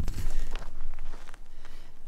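Footsteps on dry, sandy dirt, with a low rumble on the microphone at the start.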